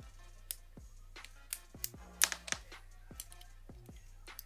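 Lego Technic pieces handled and pressed together by hand: irregular sharp plastic clicks, about a dozen, the loudest a little past the middle.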